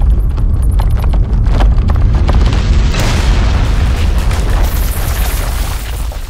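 An underground blasting explosion: a deep rumble with crackling, then about three seconds in a loud blast that trails off.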